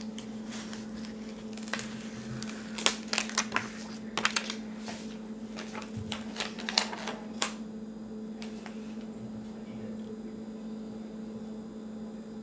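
Paper sticker sheet crackling and ticking as a large sticker is peeled from its backing and pressed onto a planner page, busiest in the first seven seconds and sparser after.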